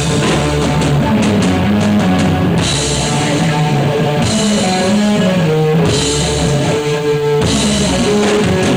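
Live stoner rock band playing a heavy, distorted guitar and bass riff over a drum kit, with crash cymbals washing in at intervals. Instrumental stretch, no vocals.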